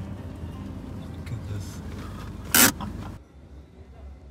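Low, steady rumble of a car's engine and road noise heard inside the cabin, with one sharp, loud clack about two and a half seconds in; the rumble cuts off suddenly just after three seconds.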